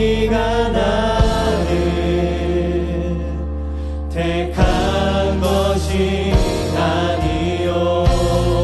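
A worship band and several singers on microphones sing a slow Korean praise song in harmony over sustained bass and keyboard, with a few drum hits. The voices drop out briefly about halfway through, then come back in.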